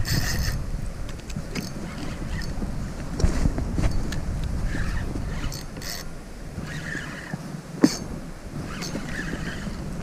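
A spinning reel cranked steadily to bring in a hooked fish, under a low rumble of wind on the microphone, with scattered light clicks and one sharper click about two seconds before the end.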